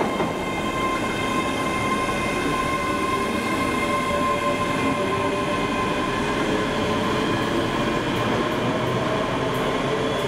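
ScotRail electric multiple unit moving through the platform: a steady rumble of wheels on rail, with the whine of its electric drive in several held tones, the lowest rising a little near the end.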